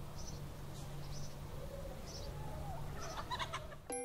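Chicken clucking over a steady low farmyard background, with short high chirps about once a second; the clucks come thickest near the end.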